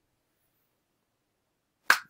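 Near silence, broken just before the end by a sharp, click-like onset as a man starts speaking.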